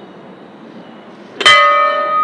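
Hanging temple bell struck once about one and a half seconds in, ringing out with several clear tones that fade slowly.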